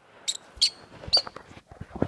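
Small pet parrot chirping under bedcovers: three short, high chirps in just over a second, over the soft rustle of the fabric.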